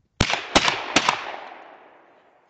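Shotgun firing three quick shots about 0.4 s apart at a thrown clay target. Each shot has a loud crack, followed by an echo that fades over about a second.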